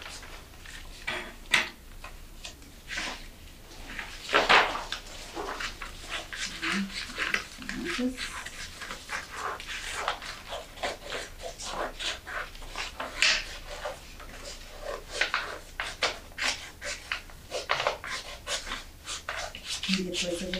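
Sheets of coloured paper being handled and cut with scissors: irregular rustles, crinkles and short snips.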